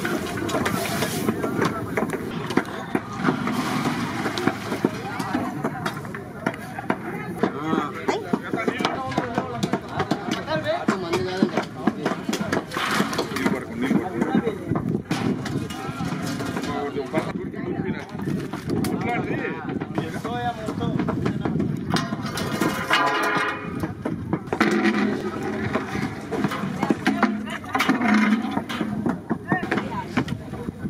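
People talking in the background, with some music.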